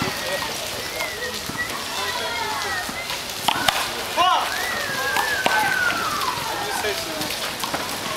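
A small rubber handball slapped by hand and smacking off a concrete wall, a few sharp slaps about three and a half to four seconds in, amid players' voices and calls.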